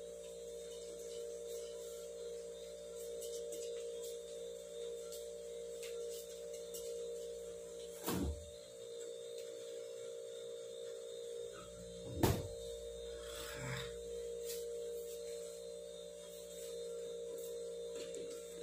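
A steady hum runs throughout. About eight seconds in there is a thump as a refrigerator door is opened, and about four seconds later a louder thump as it is shut.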